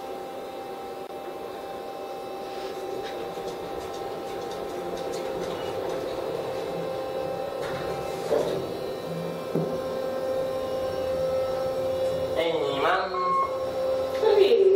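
Kone elevator cab's ventilation fan humming steadily with a few fixed whining tones; to a knowing ear it sounds like an Otis fan.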